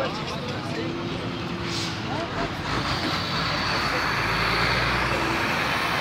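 Road traffic noise, a steady hiss and rumble that grows louder about halfway through, with voices murmuring in the background.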